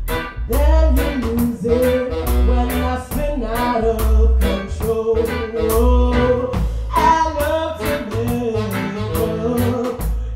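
Live blues band playing a song: a steady drum beat and a bass line under guitar, with a woman singing long held notes.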